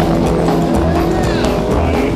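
Live rockabilly band playing an instrumental stretch between vocal lines, with a sound that glides in pitch about a second in.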